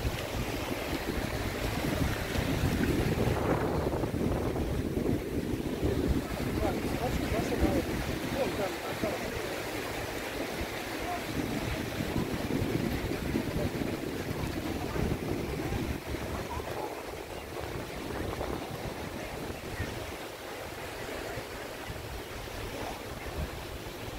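Wind buffeting the microphone over the rush of sea water and waves. It is louder for the first several seconds, then eases.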